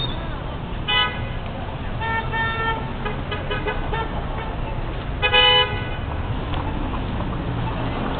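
Vehicle horns giving several short toots of steady pitch, the loudest a little past five seconds in, over a steady rumble of street traffic.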